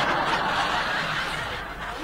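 Studio audience laughing after a punchline, the laughter dying away over the two seconds.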